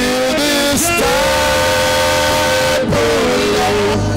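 Worship song: a man sings long held notes into a microphone, sliding between pitches, over instrumental backing, with the congregation singing along.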